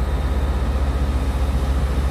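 Wind buffeting a phone's microphone, a steady low rumble.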